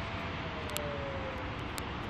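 Steady outdoor rumble and hiss of distant vehicle traffic, with one faint thin tone that slowly falls in pitch over the first second and a half.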